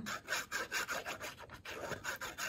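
Fine metal applicator tip of a squeeze bottle of Art Glitter Glue dragging along cardstock as a bead of glue is laid down: a quick run of short, light scratchy strokes.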